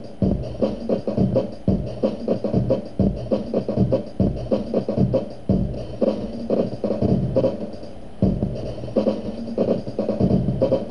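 Drum loop played back by the SunVox Sampler module, retriggered line by line with sample-offset commands so it time-stretches to the song's tempo. The tempo shifts as the song's BPM is changed during playback, and the loop follows it.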